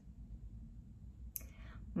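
Quiet room tone with a steady low hum; near the end, a single short mouth click and a soft intake of breath just before she starts speaking again.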